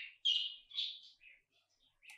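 Several short, high bird chirps in quick succession, stopping about one and a half seconds in.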